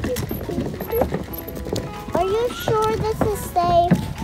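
Stroller wheels rolling over wooden boardwalk planks with repeated knocks, under background music.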